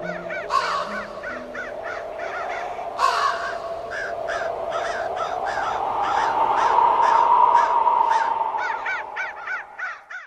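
Crows cawing over and over in quick succession, over a steady droning tone that swells louder about two-thirds of the way through and fades near the end.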